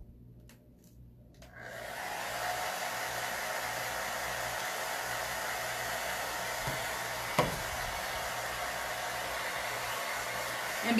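Handheld blow dryer switched on about a second and a half in, then blowing steadily to dry chalk paste. A single sharp knock comes about seven seconds in.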